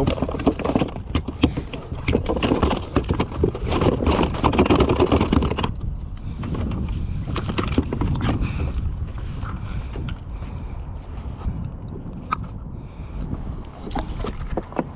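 Wind on the microphone with clicking, rustling handling noise of fishing gear and a fish being worked in a kayak, busy and bright for the first half, then suddenly duller and quieter with only scattered clicks.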